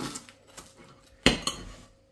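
Steel knife and fork cutting through a pie and scraping on a ceramic plate, with one sharp clink of metal on the plate about a second and a quarter in.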